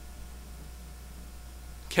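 Room tone with a steady low hum and no other sound; a man's voice begins right at the end.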